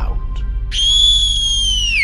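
A single high whistle that starts about two-thirds of a second in, holds a steady pitch for about a second, then slides downward near the end. A low drone sounds underneath.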